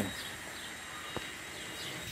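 Outdoor background noise with a few faint, short bird chirps and a single light click a little past halfway.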